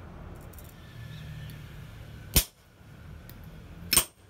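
Two sharp hammer blows on the glowing stainless-steel tube on the steel anvil, about a second and a half apart, over a low steady hum. One blow catches the anvil itself, leaving a nick.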